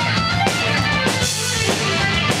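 A rock band playing live: electric guitar over a drum kit, with steady, regular drum hits.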